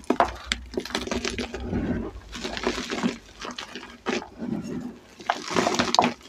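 Hands squeezing and crumbling reformed gym chalk dyed green, a run of soft crunches and dry powdery crackles that come in uneven bursts, thickest about a third of the way in and again near the end.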